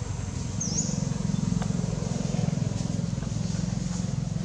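Outdoor ambience: a steady low rumble, with a short high chirp about half a second in and a faint click a little later.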